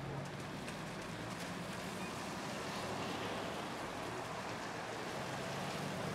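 Steady city street noise: a low hum of traffic with an even hiss, the kind heard from a wet downtown street.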